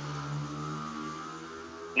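Steady low electrical hum with faint steady tones above it.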